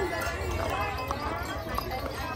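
Horses' hooves clip-clopping on a paved street as horse-drawn carriages pass, with many people's voices chattering over them.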